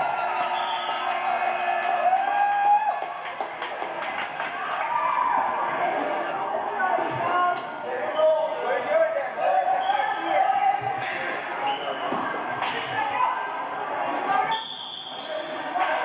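Live sound of a basketball game in an echoing gym: spectators' voices calling and talking throughout, with the thuds of a basketball bouncing on the floor.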